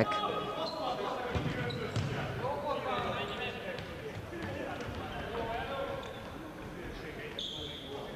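Indoor futsal game sound in an echoing sports hall: players calling to one another, with ball thuds on the wooden floor. A short high squeak comes near the end.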